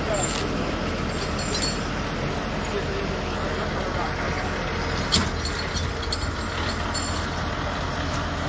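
Tractor engine running steadily with a low rumble, with one sharp knock about five seconds in.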